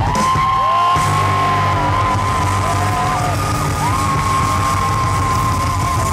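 Live rock band playing, with long held high vocal notes that slide at their ends over a steady bass and drum backing.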